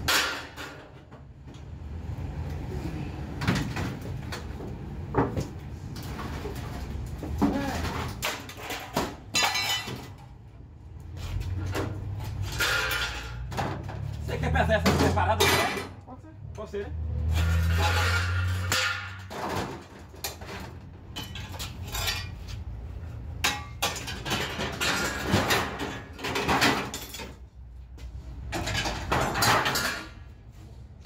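Scrap steel cans clattering and knocking against one another and on metal as they are handled and loaded for weighing, with a low rumble in the middle stretch.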